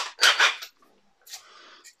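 Two short swishing noises about a quarter second apart, then a fainter one near the end: drilling dust being cleared off the board by hand.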